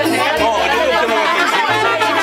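Dance music with a bass line of low notes changing about every half second, with people chatting over it.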